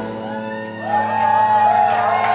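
Rock band's final sustained chord ringing out through the amplifiers after the drums stop at the end of a song, a steady drone with wavering high tones coming in about a second in.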